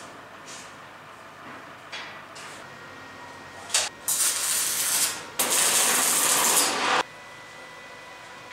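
Electric arc welding on a steel frame: a brief arc strike about four seconds in, then two welds of about a second and a second and a half, each stopping sharply, tacking a wrought-iron scroll ornament into the frame. Before the welding come a few light knocks of metal being positioned.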